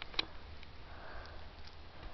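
A person sniffing quietly through the nose, a soft short intake about a second in, with a brief click shortly before it.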